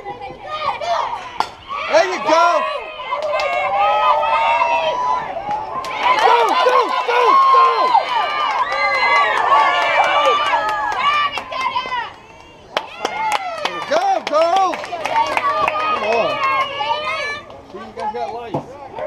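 Several girls' voices chanting and cheering together, overlapping, with a short break about twelve seconds in.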